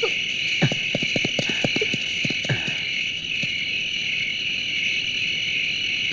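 Night ambience of crickets chirring steadily. In the first two and a half seconds there is a quick run of sharp clicks.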